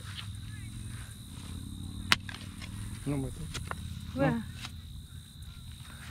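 Hands scraping and feeling through loose dug soil, with one sharp click about two seconds in, while a woman briefly asks "Where?".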